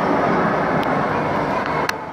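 Steady noisy hubbub of a busy public ice rink, with two short clicks, one just under a second in and one near the end.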